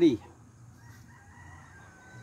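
A rooster crowing faintly, one long drawn-out crow that starts just under a second in and sinks slightly in pitch.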